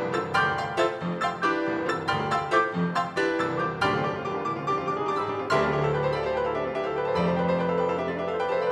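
Six Yamaha grand pianos playing together: a punchy, staccato pattern of sharp repeated chords. About five and a half seconds in, longer held bass notes come in beneath.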